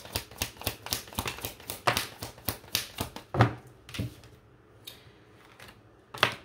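Tarot cards being shuffled by hand: a quick run of papery card clicks and flicks for about four seconds. After that it goes quiet apart from a couple of soft card clicks.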